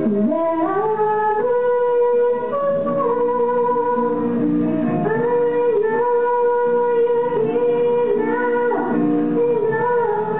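Slow sung melody in a worship service, with long held notes that waver slightly and change pitch every second or two.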